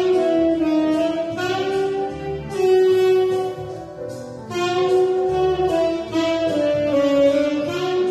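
Tenor saxophone playing a slow melody in long held notes that slide from one to the next, with a short gap between phrases about four seconds in.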